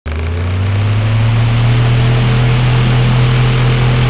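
A loud, steady, engine-like low drone with hiss over it, rising slightly in pitch at first: an intro sound effect.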